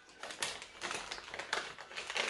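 Plastic gum paste pouch crinkling as it is folded over and pressed shut by hand, a run of irregular crackles and clicks.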